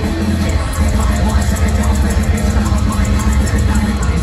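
Deathcore band playing live at full volume: heavily distorted guitars over a heavy low end and drums, with a dense, unbroken wall of sound and fast cymbal hits.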